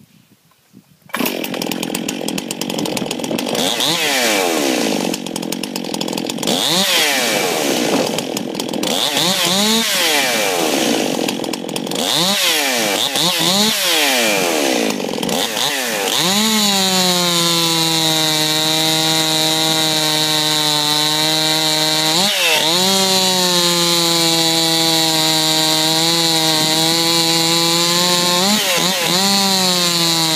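Stihl MS 261 chainsaw with a modified muffler. It comes in about a second in and is revved up and down repeatedly, then from about 16 s it holds a steady high-revving note under load as the chain cuts into a hardwood log, with a couple of brief dips in pitch.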